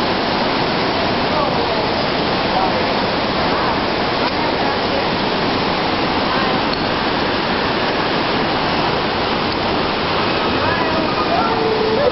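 Steady, loud rushing of water, with faint voices over it near the start and near the end.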